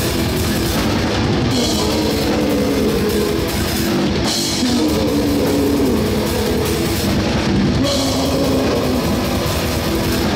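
Heavy metal band playing live: a distorted electric guitar riff over a full drum kit, with cymbal crashes about every three seconds.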